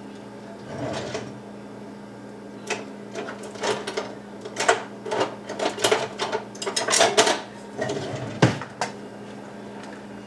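Plastic bag of egg noodles being handled, crinkling in a run of irregular sharp crackles and clicks, over a steady low hum.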